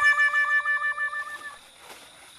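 A sustained musical tone from a comic sound effect added in editing. It warbles rapidly on one pitch and fades out about one and a half seconds in.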